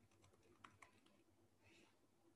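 Faint computer keyboard typing in near silence: a short run of key clicks, two of them a little louder.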